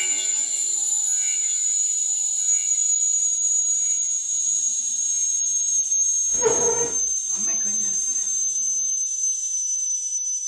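Stovetop kettle whistling at the boil: one high, steady whistle that drifts slowly lower in pitch. About six and a half seconds in a short, louder burst of another sound cuts in, and a weaker one follows a second later.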